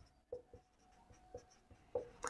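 Marker pen writing on a whiteboard: faint short strokes as a word is written.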